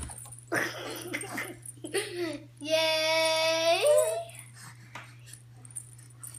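A small child's voice: a few short breathy sounds, then one long held vocal note lasting over a second that bends upward at its end.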